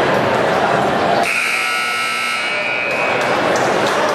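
Gymnasium scoreboard buzzer sounding once, a steady high buzzing tone about a second in that lasts roughly two seconds, over the chatter of a basketball crowd.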